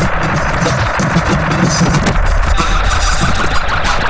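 Harsh noise music: a loud, dense wall of layered, processed electronic noise built from looped samples, with a heavy low rumble under rapid stuttering crackle. A higher buzzing band joins about two and a half seconds in.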